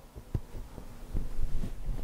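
Footsteps: a handful of dull low thuds as a man walks a few paces across the floor, over a steady low electrical hum.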